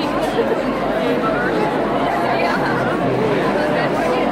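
Large standing concert crowd chattering in a big hall, many overlapping voices at once with no music playing.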